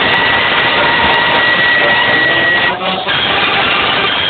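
Wind band playing, with one high note held steady for about two and a half seconds and a brief break in the sound just before the three-second mark.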